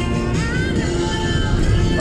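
Music playing through a car's audio speaker, heard inside the car, with a melody line over steady held notes.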